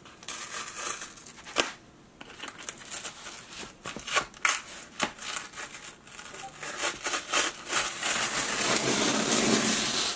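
A cardboard shipping box being cut open and handled: irregular scraping, tearing and crinkling of cardboard and packing material with a few sharp clicks, turning into a continuous rustle in the last couple of seconds.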